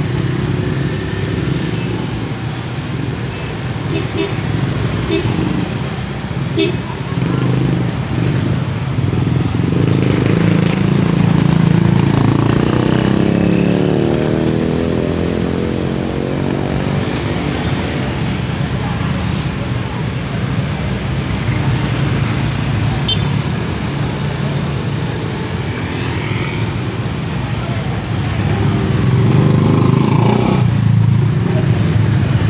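Street traffic of small motorcycles and scooters running and passing close by, with the steady hum of their engines and people's voices chattering. One vehicle passes especially close about halfway through.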